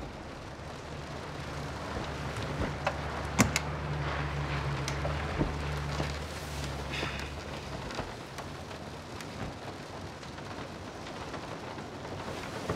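Steady rain, with a few sharp drips or ticks and a low, steady rumble from about a second in until past the middle.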